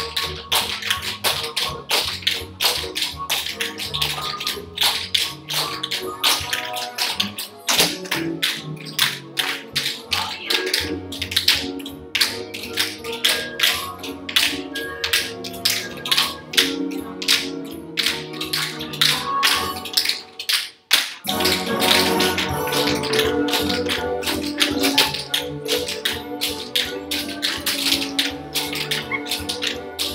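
Several dancers' tap shoes striking a wooden studio floor in quick, dense rhythms, played over a song, with a brief pause about twenty seconds in.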